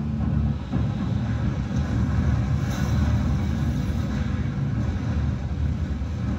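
Deep, continuous rumble of an ammunition depot blowing up and burning, with no separate sharp blasts.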